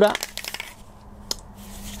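A few light clicks and taps as a small metal miniature on its base is set down on a cloth and nudged into place by a gloved hand, with one more click about a second in, over a faint steady hum.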